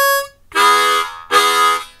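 Diatonic harmonica in A: the tail of a single hole-5 blow note, then two short chordal 'chakka' chugs less than a second apart.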